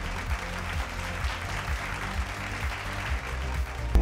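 Audience applauding steadily over background music.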